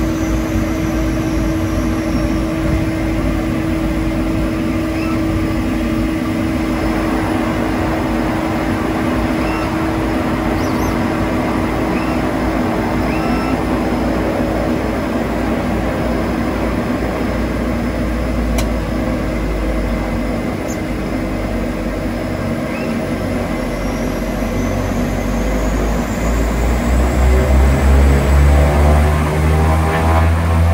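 DHC-6-300 Twin Otter's twin PT6A turboprop engines and propellers, heard from just behind the cockpit, running at low power with a steady drone and a constant hum. Near the end the power is brought up and the engine and propeller sound rises in pitch and gets louder, typical of the start of a takeoff run.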